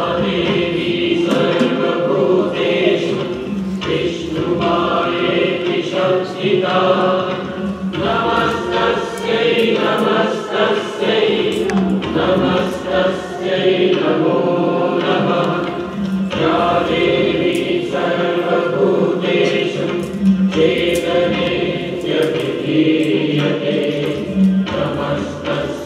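A song with voices singing over music, running steadily through the whole stretch.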